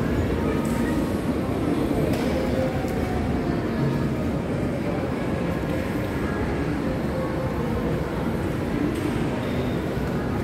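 Steady shopping-mall ambience: a low, even rumble of building and crowd noise, with faint background music over it.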